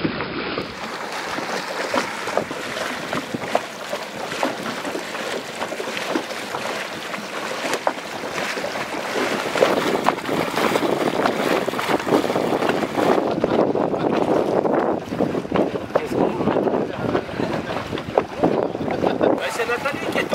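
Lake water splashing and lapping close to the microphone, with wind buffeting it; the splashing gets louder about halfway through.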